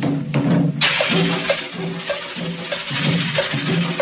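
Cumbia music from a sonidero sound system: a repeating low melodic figure, joined about a second in by a loud hiss that spreads high across the top and holds to the end.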